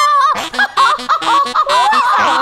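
A long wavering sung note cuts off, and a person goes into a choppy run of short vocal sounds with jumpy, breaking pitch: a deliberately bad mock vocal warm-up, likened to a chicken.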